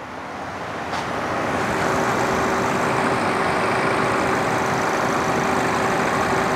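2008 Chevy Cobalt's engine idling with a thin steady whine over its running noise, growing louder over the first two seconds and then holding steady.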